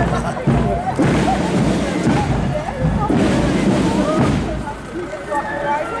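Several people's voices talking close by, overlapping, over steady street noise.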